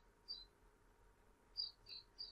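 Near silence with a few faint, short, high-pitched bird chirps: one about a third of a second in and two near the end.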